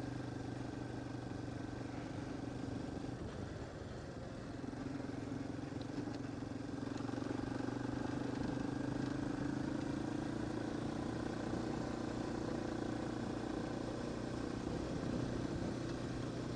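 Yamaha Warrior quad's single-cylinder four-stroke engine running at a steady, moderate pace on a dirt road. It eases off briefly about three to four seconds in, then picks up again and holds steady.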